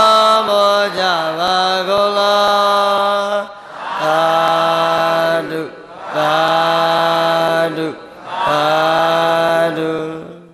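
A Buddhist monk chanting alone in long, drawn-out sung phrases: four held notes, each a second or more long with short breaths between, the first pitched a little higher than the three after it.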